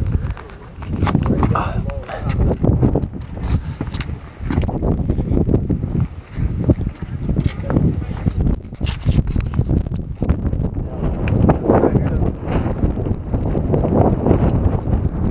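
Wind buffeting the camera microphone, a heavy, uneven rumble, with indistinct voices under it.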